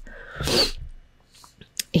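A woman's short, noisy breath sound of about half a second, close to the microphone, in a pause between sentences.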